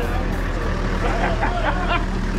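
Toyota minibus engine idling with a steady low hum, under voices and a laugh.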